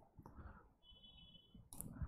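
Near silence, with a few faint taps of a stylus on an interactive whiteboard and a faint brief high tone about a second in.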